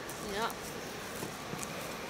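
A single quiet spoken "yep" near the start, then faint steady outdoor background noise with a couple of small ticks.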